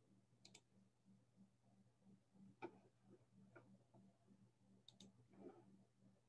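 Near silence: faint room tone with a steady low hum and a few faint, scattered clicks.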